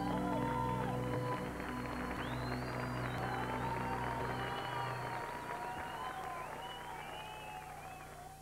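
Slow stage music with held low notes that stop about five seconds in, under audience applause and cheering. The sound fades down near the end.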